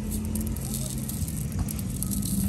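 Steady low rumble of a motor vehicle engine running nearby.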